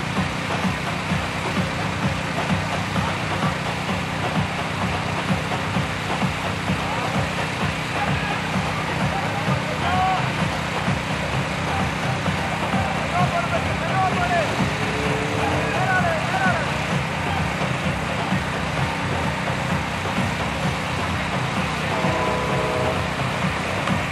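Steady low outdoor rumble, with faint distant voices calling now and then, a little more near the middle and the end.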